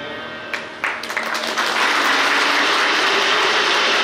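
Audience applause: a few scattered claps about half a second in, filling out into steady clapping from about a second and a half.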